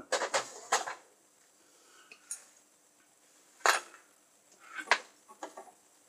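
Small hard objects being handled and set down on a desk: a handful of separate sharp clinks and knocks, the loudest a little past halfway through.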